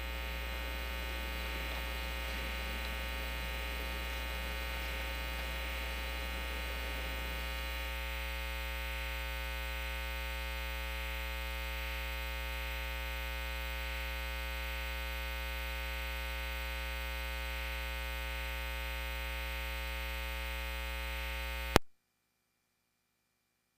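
Steady electrical mains hum in the audio system, a low buzz with many even overtones, with faint background noise that fades out about eight seconds in. A single sharp click near the end, then the sound cuts off.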